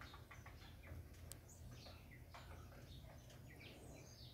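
Faint, scattered chirps of small birds over a quiet, steady low background rumble.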